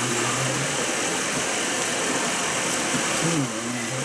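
Steady rushing background noise, like a fan or air conditioner running in the room, with a few faint low murmurs of a voice; the noise eases slightly near the end.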